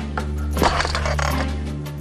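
Background music holding sustained low notes, with a short, bright, sharp hit about half a second in.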